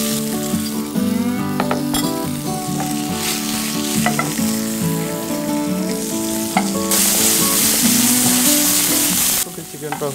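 Chicken pieces sizzling as they fry in a hot pan over high heat, which drives off the meat's water. The sizzle is loudest near the end, then drops off suddenly.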